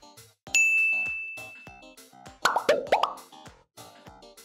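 Edited-in game-show sound effects over bouncy keyboard background music: a bright ding about half a second in that rings and fades over a second or so, then a quick cluster of bubbly plops in the middle.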